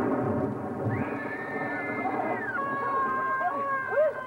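Long held high notes in a stage musical number, two pitches sounding together, which drop to a lower pair about halfway through. Near the end they break off with a quick upward slide.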